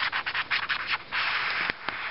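Red felt-tip marker scratching across paper in a run of short quick strokes as it draws a wavy outline, then one longer stroke about a second in. Two sharp ticks come near the end.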